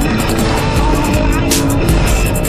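Background music with a steady beat: deep bass and regular cymbal strokes.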